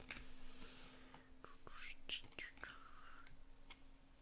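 Stack of chrome-finish baseball cards handled and flipped through one at a time: light clicks and soft sliding as each card is pushed off the stack, with a faint hiss of breath or muttering.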